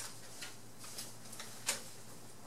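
A pause in speech filled by faint room hum and a few small, irregular clicks, the sharpest about one and a half seconds in.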